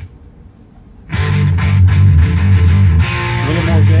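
A JVC RV-NB1 powered-woofer boombox playing a CD: the music cuts off suddenly as the track is skipped, there is a quiet gap of about a second, then a rock track with electric guitar and heavy bass starts loudly.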